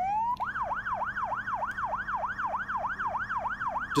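Police car's electronic siren switching from a slow falling wail to a fast yelp, its pitch rising and falling about four times a second.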